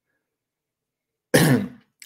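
Dead silence for over a second, then a man clears his throat with a short cough lasting about half a second.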